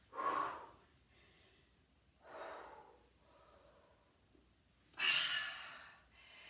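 A woman's hard breathing from exertion: three loud, breathy exhalations about two and a half seconds apart.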